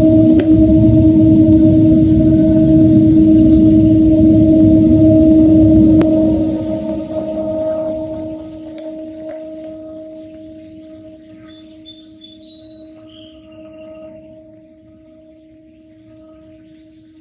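An unexplained steady droning tone with one higher overtone, one of the 'strange noises' reported from the night sky. A loud rumbling background drops away about six seconds in, leaving the drone alone with a few faint high chirps near the end.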